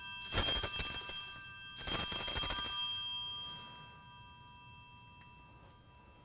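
Altar bells shaken twice, about a second and a half apart, their bright ringing dying away over the next couple of seconds. They mark the elevation of the consecrated host.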